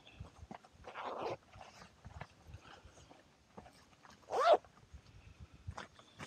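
Nylon hammock tree strap and its metal ring being handled around a tree trunk: scattered light clicks and rustles, with a longer rustle about a second in. About four and a half seconds in comes a short pitched cry, the loudest sound, whose source is not shown.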